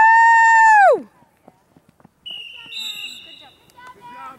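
A person's loud, high whoop of cheering: it rises sharply, holds for about a second, then falls away. A fainter, higher call follows in the second half.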